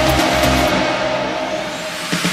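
Electronic dance music in a filtered build-up: the treble drops away and then the bass thins out, so the track sinks gradually in level ahead of the next drop.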